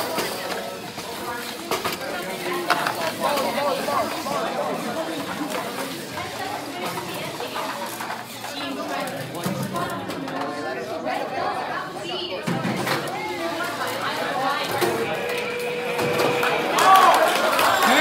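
Indistinct chatter from many voices at once, with no single clear speaker, growing louder near the end.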